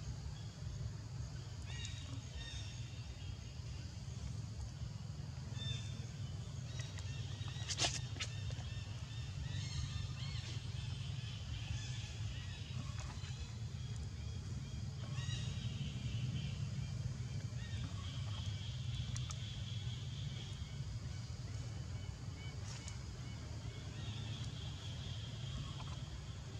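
Outdoor ambience: a steady low rumble with scattered high chirps coming and going, and one sharp click about eight seconds in.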